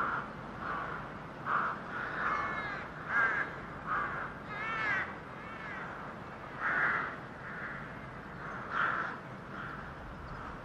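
Birds calling: a series of short calls, roughly one a second, over a steady background hiss, with no music.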